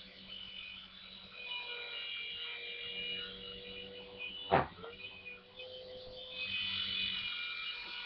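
Small electric motor and rotors of a Brookstone Combat Helicopter, a toy RC helicopter, whirring in flight, the pitch drifting up and down as the throttle changes. A brief knock about halfway through.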